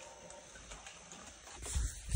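Two short low thumps near the end as a dirt bike's front wheel is brought onto a bathroom scale.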